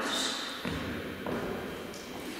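A couple of soft footsteps on a wooden sports-hall floor, echoing in the large hall.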